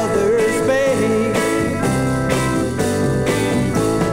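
1967 psychedelic garage rock recording: a rock band playing at a steady, full level, with no sung words.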